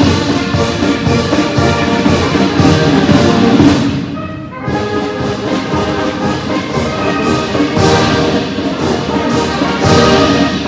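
Military band playing live, brass instruments carrying the tune over a steady drum beat. About four seconds in the music breaks off for a moment, then resumes.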